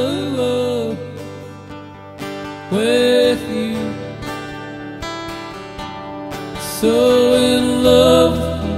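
Solo acoustic guitar strummed in a slow country ballad, with a man singing long held, wavering notes in phrases about every four seconds.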